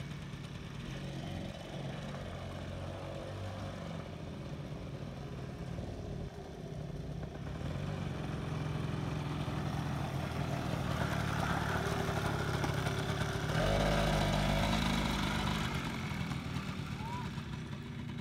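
Small youth quad bike's engine running at low speed as it is ridden around, growing louder as it comes near and loudest with a low rumble about three-quarters of the way through, then fading as it moves away.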